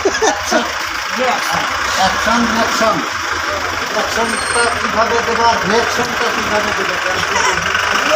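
People talking, with a steady low hum and hiss underneath.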